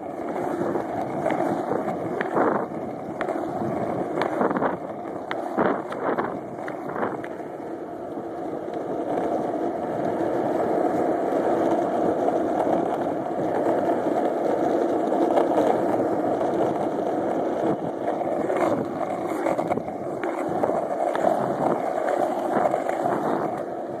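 Skateboard wheels rolling on asphalt: a continuous gritty rumble that builds a little as the board picks up speed. There are several sharp knocks in the first few seconds.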